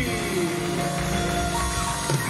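Live band playing a short musical sting: a falling pitch glide at the start, then held chords, with a higher note entering near the end.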